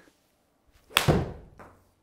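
A golf club striking a ball off a hitting mat: one sharp crack about a second in, fading with a short ring in the room, and a faint tick near the end.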